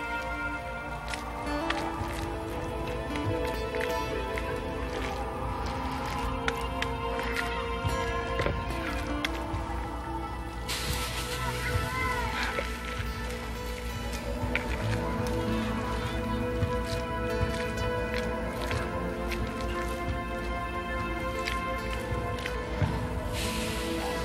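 Background music of sustained tones. A steady hiss joins it about halfway through.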